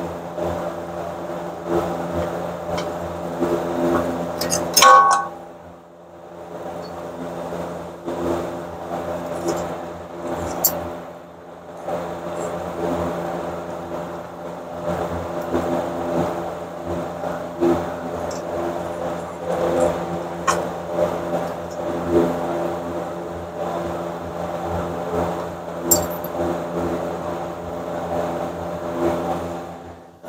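A steady mechanical hum made of several level tones runs throughout, the sound of a machine running in the shop. Over it come light metallic clicks of brake and hub parts being handled, and a brief metallic ring about five seconds in, the loudest moment.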